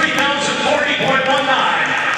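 A man's voice over an arena's public-address system, echoing in the large hall.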